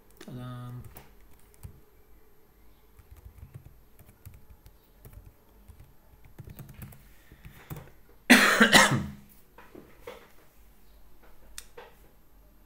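Computer keyboard typing in scattered short runs of keystrokes, with one loud cough about eight seconds in. A brief hummed voice sound comes near the start.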